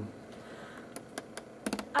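A few light, sharp clicks and taps, about six of them, starting about a second in and bunching together near the end, over quiet room tone.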